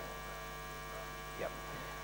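Steady electrical mains hum in the sound system, with a brief faint spoken 'yep' about one and a half seconds in.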